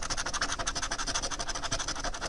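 A coin scratching the scratch-off coating from a paper lottery ticket in fast, even back-and-forth strokes, about a dozen a second.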